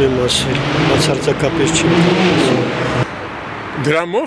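A man speaking Armenian into a handheld microphone, with a steady rumble of street traffic behind him; his voice stops about three seconds in.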